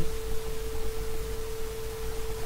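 A steady single-pitch tone, a constant whine in the recording's background, over a low rumble.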